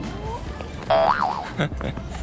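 Cartoon 'boing' spring sound effect about a second in: a sudden loud, pitched twang lasting about half a second, its pitch wobbling up and down.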